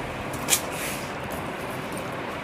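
Hands handling a heavy Banarasi silk brocade gharara, with a short cloth swish about half a second in, over a steady background noise.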